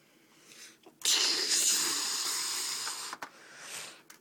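A loud, breathy hiss of air close to the microphone, starting suddenly about a second in and held for about two seconds, then a shorter, fainter hiss near the end.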